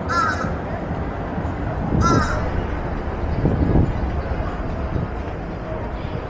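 A crow cawing twice, about two seconds apart, over a steady low outdoor rumble.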